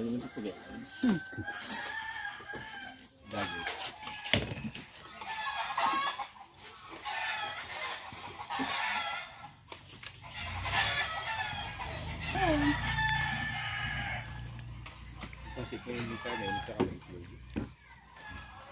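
Chickens: a rooster crowing repeatedly, with hens clucking.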